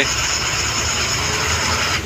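Steady truck engine and road noise heard from inside the cab while driving.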